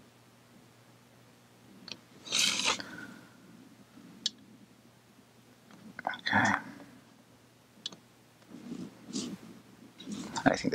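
Quiet room with a few brief rustling and clicking handling sounds: a short rustle about two and a half seconds in, the loudest, another about six seconds in, sharp clicks between them and a softer rustle near the end.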